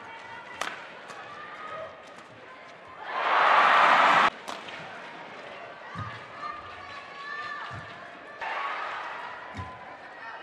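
Badminton rally in an arena: a sharp racket-on-shuttlecock hit about half a second in, then low thuds of players' footwork on the court. A loud burst of crowd noise comes about three seconds in and cuts off abruptly, and crowd noise rises again near the end over a steady murmur.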